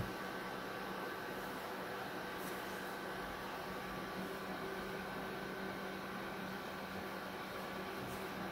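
Steady low hum with a faint high whine over a soft hiss, the running noise of a desktop gaming PC.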